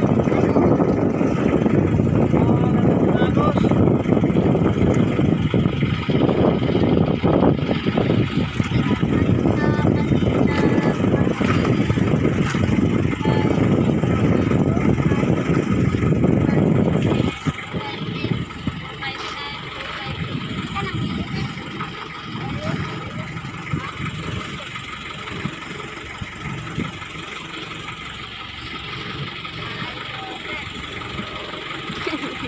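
Outrigger fishing boat's engine running steadily, heard with a heavy low rumble over it that drops away suddenly about two-thirds of the way through, leaving the engine quieter.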